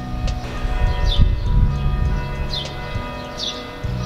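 Church bells ringing, several steady tones sounding together over a low background hum.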